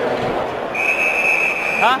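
A hockey official's whistle blown once, a steady high tone lasting about a second, over arena background noise.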